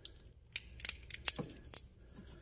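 Short, scattered crackles and clicks of an engine wiring harness's corrugated plastic loom and old tape being flexed and handled by fingers, starting about half a second in.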